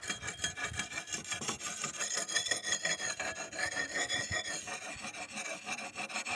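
A hand-held whetstone rubbed in quick back-and-forth strokes along the wetted steel edge of an MCK dodos, a palm-oil harvesting chisel blade, as it is sharpened: a steady gritty scraping of stone on steel.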